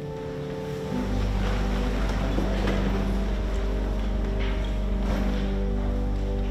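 Church organ holding sustained chords; a deep pedal bass note comes in about a second in and holds steady under the chord.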